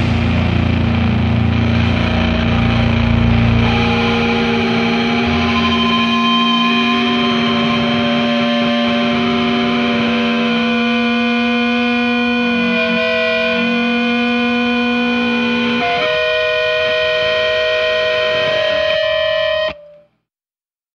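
Distorted electric guitar feedback from a grindcore track ringing out as long held tones. The low drums and bass stop about four seconds in, the held tones change pitch a few times, and the sound cuts off suddenly just before the end.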